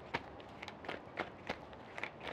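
Tarot cards being shuffled and handled: a string of faint, soft ticks about three a second as the cards slip and snap against each other while one more card is drawn.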